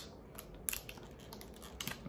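Plastic blister pack of a diecast car being handled: a few faint crackles and clicks, the sharpest about two-thirds of a second in and near the end.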